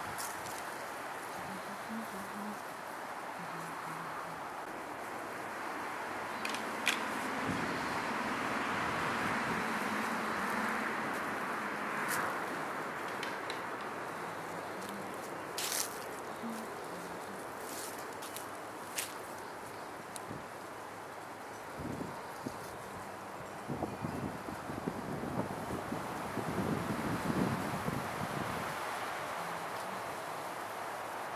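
Brush and dry leaves rustling and snapping as a bull elk thrashes a brush pile with its antlers. A few sharp snaps come through the first two-thirds, and the crackling grows dense near the end, over a steady outdoor hiss.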